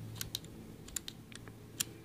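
Several light, scattered clicks of a metal dental pick against a KeyTronic keyboard's plastic key plunger, the sharpest near the end, as the pick lifts the newly fitted foam-and-foil pad to test that it is held under the plunger's teeth.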